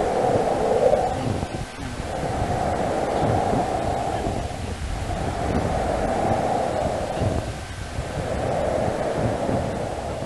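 A rushing noise that swells and fades in slow waves about every two and a half seconds, with faint scattered clicks.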